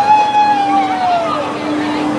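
A rider's long, held yell on a spinning flat ride, sliding slowly down in pitch and fading after about a second and a half, over the steady hum of the ride's machinery.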